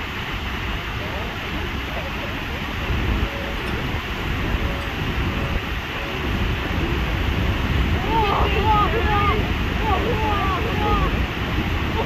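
Steady roar of Niagara's Horseshoe Falls plunging into the gorge, mixed with wind on the microphone. People's voices call out over it in the last few seconds.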